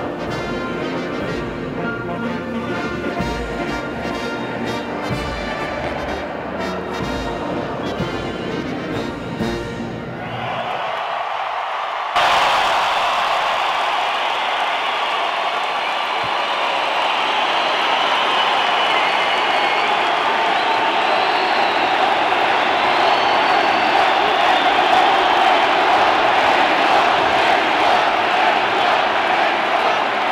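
Military band with saxophones playing the last bars of a piece, which ends about ten seconds in. A large arena crowd then breaks into loud cheering and applause that builds a little and keeps going.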